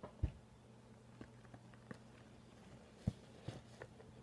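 Faint handling noises of snack packaging: a few soft knocks and ticks, the clearest about a quarter second in and two more around three seconds, over a low steady hum.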